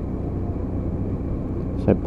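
BMW F800's parallel-twin engine running steadily while the bike rides round a bend, a low even drone with road and wind noise over it.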